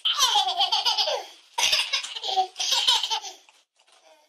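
Toddler laughing hard in three bursts, each starting high and falling in pitch.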